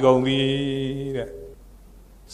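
A Buddhist monk's voice intoning a chanted syllable, held on one steady note for just over a second, then breaking off into a pause.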